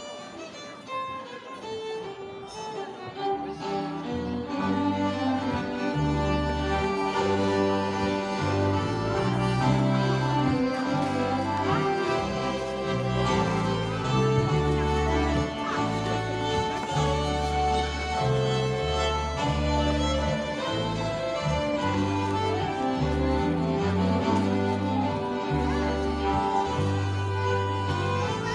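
Live old-time Swedish dance band (gammeldans) playing a waltz: fiddles carry the melody over a steady bass line. The music starts softly and fills out over the first few seconds.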